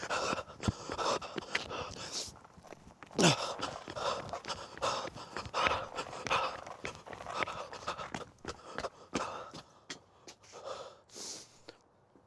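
A man panting hard from running, in quick uneven breaths, one louder voiced gasp with falling pitch about three seconds in.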